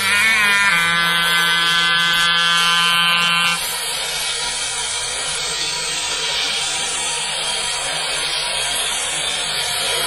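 Distorted electric guitar holding one long sustained note with a slight upward bend at its start, cutting off suddenly about three and a half seconds in. A steady wash of noise follows.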